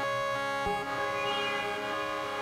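Electronic music: a sustained synthesizer chord that shifts to a new chord about two-thirds of a second in, with the bass line dropped out.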